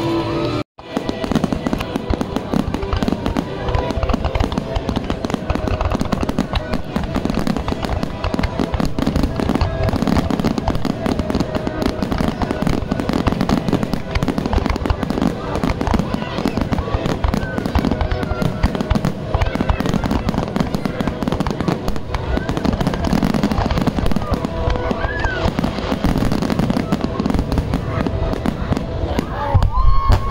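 Fireworks finale: many shells bursting at once in a continuous barrage of rapid bangs and crackle, broken only by a brief gap about a second in.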